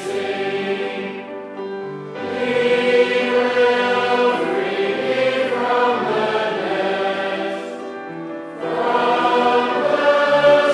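Congregation singing a metrical psalm in slow, sustained notes, with a brief dip between sung lines about a second and a half in and again near eight seconds.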